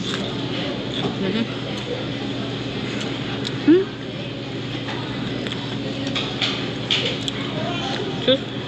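Restaurant dining-room background: a steady hum with the murmur of other people's voices, and a few short clicks.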